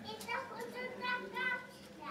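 A young child's high-pitched voice, faint, making a few short vocal sounds in quick succession, then falling quiet near the end.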